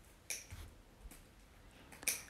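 A few faint, sharp clicks in a quiet room from eating by hand: flatbread being torn and picked at over a plate. The loudest click comes about a third of a second in, with smaller ones after it.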